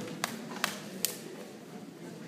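Three sharp taps, evenly spaced about 0.4 s apart in the first second, over a low steady murmur of a room full of people.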